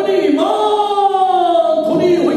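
A man's voice singing loudly: one long held note that slides slowly down in pitch, with a new phrase starting near the end.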